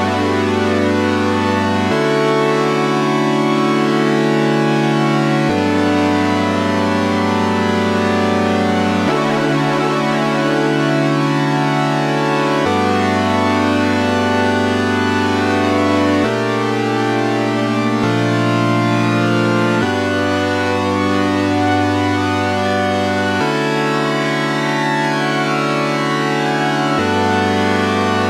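GForce OB-E software synthesizer, an emulation of the Oberheim 8-Voice, playing a sustained chord progression, the chords changing every three to four seconds. Oscillator 2's pitch is swept by a slow sine-wave modulation from oscillator 3, so that it sounds like a voice going crazy in the background.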